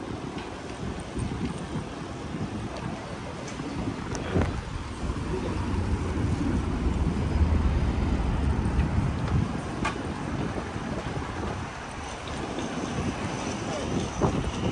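Wind buffeting the microphone of a camera carried on a moving bicycle, over city traffic and street noise. The low rumble grows heavier in the middle, and there are a couple of faint clicks.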